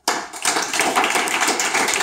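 Audience applauding, starting suddenly and keeping up steadily.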